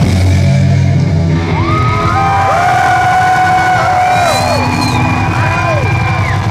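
A live psychobilly band's song ends with a final hit near the start, then the concert crowd yells and whoops, with several long shouts rising and falling in pitch.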